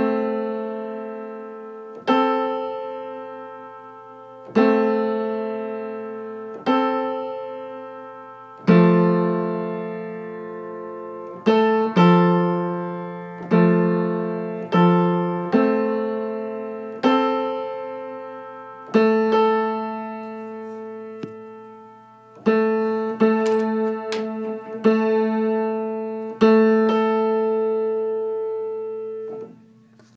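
Acoustic piano notes struck one after another, about every one to two seconds, each left to ring and die away: the A3 and A4 notes of an octave being tuned and checked. A lower note joins for several strikes near the middle.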